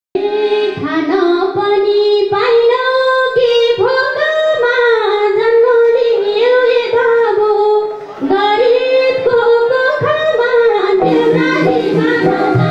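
A woman singing a Nepali lok dohori verse solo into a microphone, her voice sliding between long held notes, with a short breath pause about eight seconds in.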